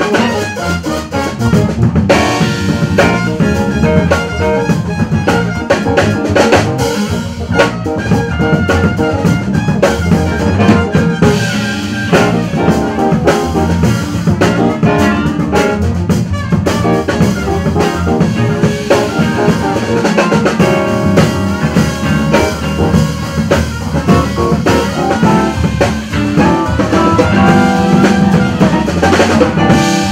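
Live jazz band playing a funk groove, with a drum kit prominent alongside electric guitar and horns.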